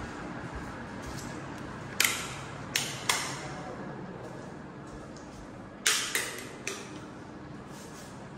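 Six sharp clacks in two groups of three, about two seconds in and again about six seconds in, over a low steady room noise.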